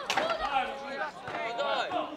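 Men and boys shouting across an outdoor football pitch, with a sharp knock right at the start.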